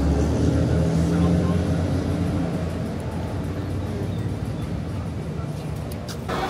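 A motor vehicle's engine hum that fades after the first couple of seconds, over steady outdoor traffic noise.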